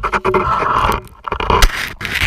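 Ski and gear scraping against hard snow and ice at close range: one long scrape, then a string of knocks and scrapes with the loudest near the end.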